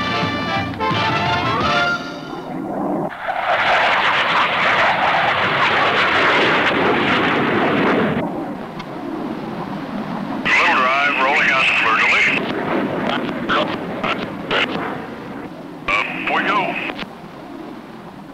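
Music fades out in the first couple of seconds. Then a loud, steady jet roar from the A-4F Skyhawk formation takes over and drops lower after about eight seconds. Short, clipped radio voice calls sound over the cockpit noise about ten seconds in and again near the end.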